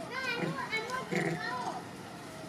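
A run of short, high-pitched vocal calls that rise and fall in pitch, one after another, fading out near the end.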